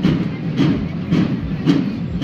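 A parade's marching drums keeping a steady beat, one strike about every half second.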